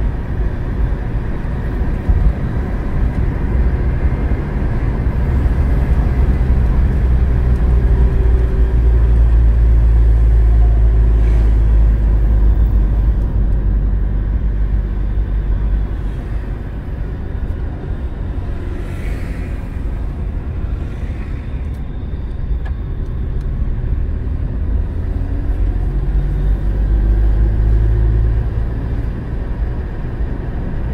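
Road and engine rumble heard from inside a moving car's cabin. It is steady and low, growing louder for a stretch in the first half and again near the end.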